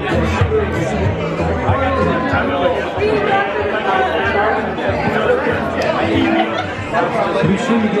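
Many people chatting at once, with music playing underneath.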